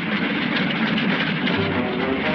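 Cartoon soundtrack music playing loudly and continuously.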